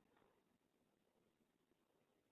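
Near silence: the recording's faint noise floor, with no distinct sound.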